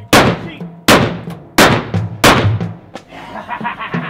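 Four revolver shots fired in quick succession, about three-quarters of a second apart, each loud and dying away quickly.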